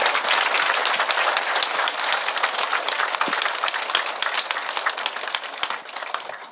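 Large audience applauding, many hands clapping at once; the clapping thins out and fades near the end.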